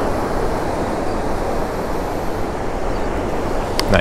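Steady rush of wind on the microphone mixed with breaking surf on a beach, even and unbroken throughout.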